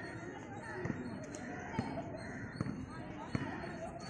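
Overlapping shouts of kabaddi players and onlookers during a raid, broken by sharp smacks about once a second.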